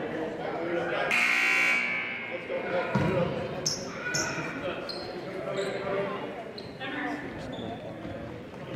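Gymnasium scoreboard buzzer sounding once for about a second, echoing in the hall, followed a moment later by a basketball bouncing on the hardwood floor, with voices in the background.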